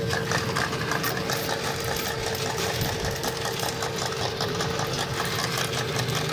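Coin-operated fruit slot machine counting a 108-credit win into its credit total: a rapid, even ticking over a steady tone, running without a break.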